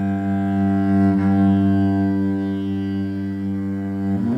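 Cello bowing a long, steady low drone note.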